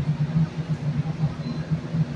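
Steady low hum and even background rush inside a stationary passenger train car.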